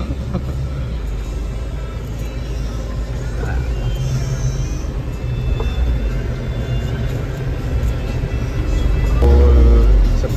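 Cab of a Mitsubishi Canter-based diesel microbus under way: steady low engine and road rumble, growing louder near the end, with background music laid over it.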